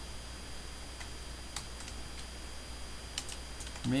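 A few scattered computer keyboard keystrokes, faint clicks at irregular intervals, over a steady low hum.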